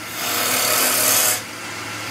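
A turning tool cutting a small spinning wooden spindle on a wood lathe, shavings coming off in a continuous cut that eases off about one and a half seconds in and starts building again near the end. A steady lathe motor hum runs underneath.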